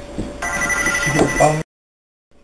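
A telephone ringing: a steady electronic ring starting about half a second in, cut off suddenly a little after one and a half seconds.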